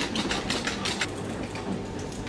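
Plastic wheels of a child's ride-on toy car rattling and clicking over the floor as it is driven along, mostly in the first second, then dying down to a quieter background.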